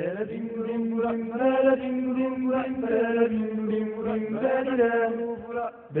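A voice singing a chant-like theme in long, held notes that slide between pitches, with little or no instrumental backing, starting abruptly and pausing briefly near the end before the next phrase.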